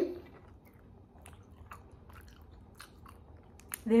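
A person chewing a soft, chewy Turkish nougat with the mouth closed, making faint irregular wet mouth clicks.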